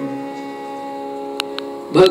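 Carnatic music: a violin holds one steady note over a steady drone, with two light drum taps near the end.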